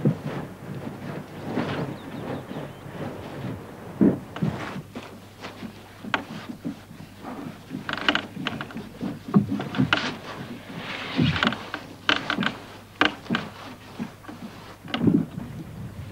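Irregular knocks, scrapes and brush strokes of hand work on the wooden hull of an upturned log-driving boat, including a brush spreading a dark coating along the planks.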